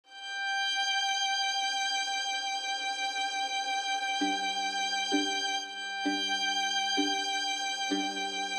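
Sampled solo violin from HALion Sonic SE violin patches: a sustained high bowed (arco) note in octaves, joined from about four seconds in by pizzicato double stops plucked on the G and D strings about once a second.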